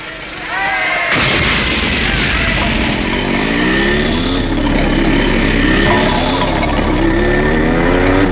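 Action-film sound effects: a sudden loud blast of noise about a second in, then a motor vehicle engine revving up and down over a continuing rumble.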